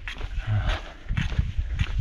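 Uneven walking footsteps on a trail, short scuffs about every half second, with breathing between them: a runner walking with a limp on a painful left knee.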